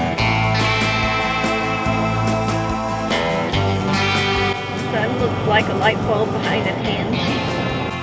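Background music with guitar, played steadily; a voice comes in over it for a couple of seconds past the middle.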